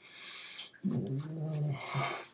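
A disposable twin-blade razor scraping over dry neck stubble without shaving cream, then about a second in a man's short closed-mouth hum, held for about a second.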